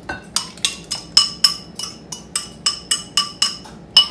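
A spoon or spatula clinking against a mixing bowl about four times a second, with a short ring after each hit, as the wet ingredients are scraped out and poured in.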